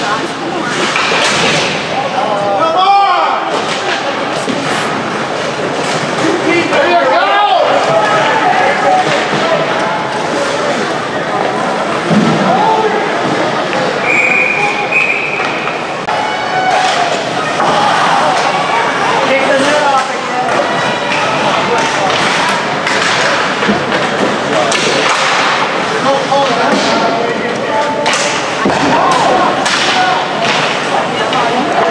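Ice hockey game in play in an indoor rink: repeated thuds and knocks of the puck, sticks and players against the boards, with spectators' voices calling out.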